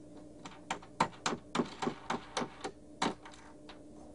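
Irregular small plastic clicks and taps, about a dozen in three seconds, from turning a fence energizer's plastic terminal knobs and pulling the lead-out and ground wires off the terminals.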